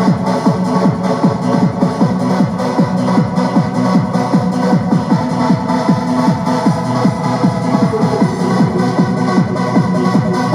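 Hard house dance music with a fast, steady kick-drum beat under sustained synth tones.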